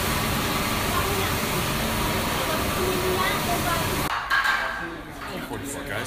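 Loud, steady hiss and rumble of sugar cane processing machinery in a rum factory, with voices over it. It cuts off abruptly about four seconds in, giving way to quieter room sound with voices.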